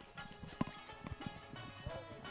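Footsteps on dry, loose soil: a few uneven steps up a slope, with faint background music underneath.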